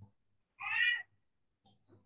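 A single short, high-pitched, meow-like cry lasting about half a second, just over half a second in.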